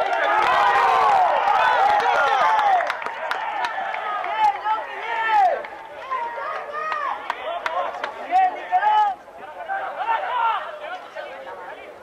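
Many voices shouting and cheering together as a try is scored at a rugby match. There is a loud burst for the first few seconds, then scattered shouts.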